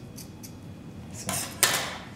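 A few faint snips of scissors cutting through hoodie fleece, then the metal scissors are set down on a glass tabletop with a sharp clatter about a second and a half in.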